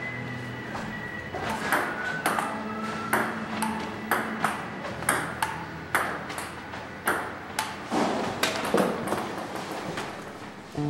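Table-tennis ball played back and forth, a run of sharp pings of ball on table and bat, about two a second.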